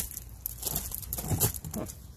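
Light clicks, knocks and rustling as a hydraulic power-trim ram is picked up and handled against an outboard's transom bracket, the loudest knock about one and a half seconds in.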